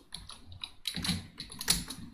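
Typing on a computer keyboard: a quick run of separate keystrokes.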